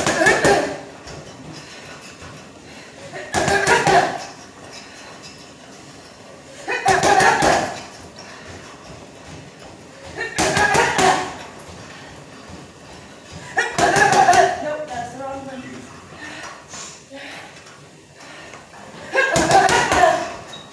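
Gloved punches landing on a hanging heavy bag in quick combinations: short bursts of several hits, about every three to four seconds, six bursts in all, with a longer gap before the last one.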